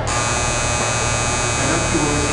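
Platform departure bell at a Japanese railway station ringing: a shrill, steady electronic buzz that starts abruptly and signals an imminent departure. Underneath it, a diesel railcar is idling with a low steady hum.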